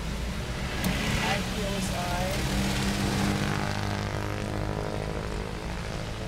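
Road traffic: vehicle engines running with a continuous low rumble, and a steady engine hum coming in about two and a half seconds in.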